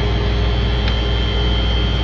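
Steady hum and hiss of ventilation running, with a thin high whine held throughout.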